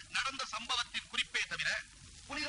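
A man talking very fast and loudly in short, clipped bursts.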